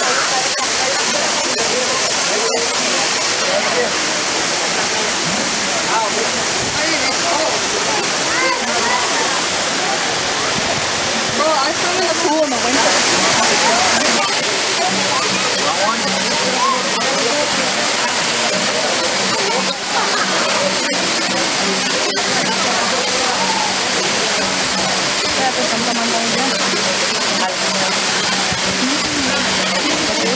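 Waterfall pouring into a rock pool close by: a steady, unbroken rush of falling water, with people's voices chattering over it.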